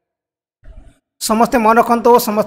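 Silence for about a second, then a voice starts speaking again.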